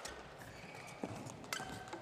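Badminton rally: rackets striking the shuttlecock in sharp pops, three of them within the two seconds, with a brief squeak of a shoe on the court near the end.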